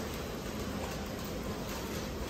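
Steady supermarket background noise in a shopping aisle, an even hiss with no distinct events.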